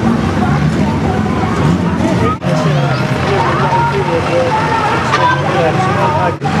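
Voices and crowd chatter over the steady hum of running engines, with the sound dropping out briefly about two and a half seconds in.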